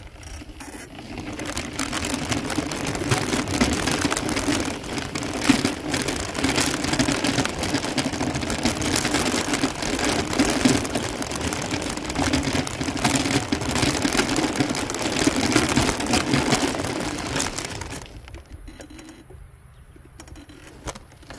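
A small motorised vehicle rolling along a gravel road: a steady motor hum under the crunch and crackle of wheels on gravel. It gets going a second or two in and goes quiet about two seconds before the end.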